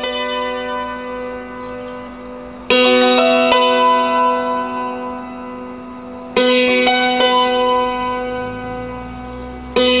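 Hammered dulcimer being played: struck metal strings ringing on over a held low note, with a loud burst of struck notes about every three and a half seconds.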